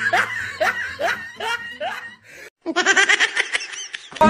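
Laughter in quick repeated bursts, about four a second, that cuts off abruptly about two and a half seconds in; after a brief silence, more laughing follows with a thinner sound.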